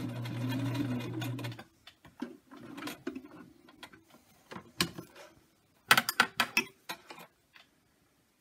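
Electric household sewing machine stitching at a steady run, stopping about one and a half seconds in. Then scattered sharp clicks and two short clattering bursts, the loudest a little past the middle.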